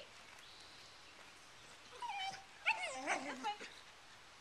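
A Welsh Terrier puppy's high-pitched yips and whines: one short call about halfway through, then a quick cluster about a second later.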